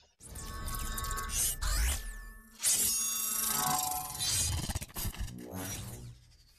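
Logo-reveal intro sound design: whooshing sweeps with a falling glide and a low boom about two seconds in, then a sudden hit and layered ringing tones that fade out near the end.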